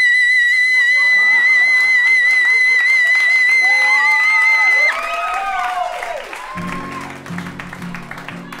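A woman sings a very high, long-held note, sliding up into it and holding it steady with slight vibrato for about five seconds before cutting off. The audience then whoops and applauds, and acoustic guitar strumming comes back in near the end.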